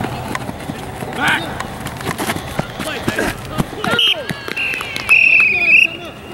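Shouting voices from players and the sideline, then a referee's whistle blown once, a piercing warbling blast of about a second, shortly before the end.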